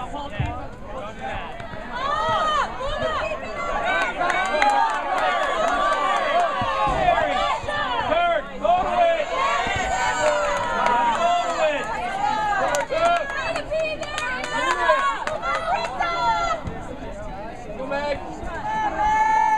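Several high-pitched voices shouting and calling out over one another, no clear words, from players and spectators at a girls' soccer game; the calling thickens about two seconds in.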